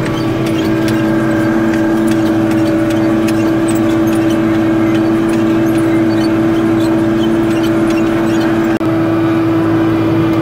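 John Deere 4450 tractor's six-cylinder diesel engine running steadily under load while pulling a chisel plow, heard inside the cab as a strong, even hum. The sound drops out for an instant near the end.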